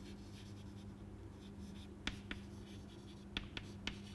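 Chalk writing on a chalkboard: faint scratching with a few sharp ticks as the chalk strikes the board, mostly in the second half, over a low steady hum.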